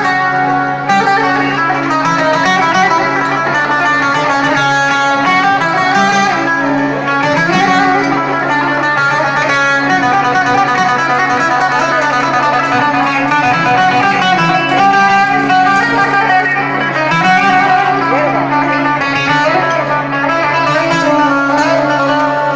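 Live band playing an instrumental passage of Azerbaijani-style music: a plucked-string lead melody over a steady held drone.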